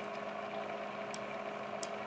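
Steady low electrical hum and hiss of room tone, with a couple of faint, short clicks.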